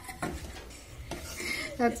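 A steel slotted spoon clinking and scraping against a pan while stirring sliced onions in oil, with a faint sizzle of the frying beneath.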